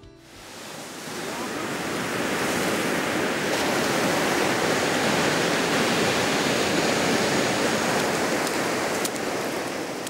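Ocean surf washing up a sandy beach, a steady rushing wash of breaking waves that fades in over the first couple of seconds.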